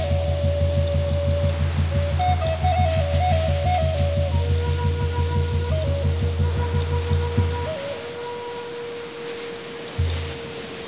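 Native American flute melody over a pulsing low drone. The drone stops about three-quarters of the way through, leaving the flute holding one long note.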